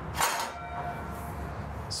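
Aluminum head divider of a horse trailer being swung over: a single metallic clank about a quarter second in, followed by a faint ringing tone.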